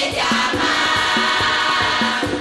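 A women's carnival murga choir singing a long held chord together over a steady drum beat.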